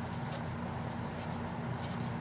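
Sharpie felt-tip marker writing on paper: a run of short pen strokes as letters are drawn, over a steady low hum.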